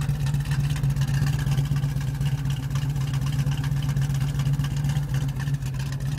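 Chevrolet 350 small-block V8 with headers and a dual exhaust idling steadily at the tailpipes, an even rumble with no revving.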